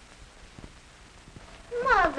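Faint soundtrack hiss with a couple of soft clicks, then near the end a woman's voice begins a long vocal sound that falls in pitch.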